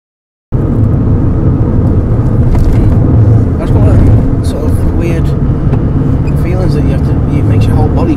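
Road noise inside a moving car's cabin: a loud, steady low rumble of engine, tyres and wind. It cuts in about half a second in, after a short silence.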